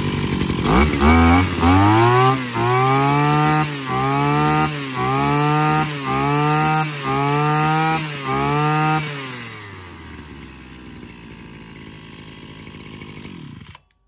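A new 33 cc two-stroke brush cutter engine idling smoothly, then blipped through about eight quick revs roughly one a second. It drops back to idle and cuts off suddenly near the end.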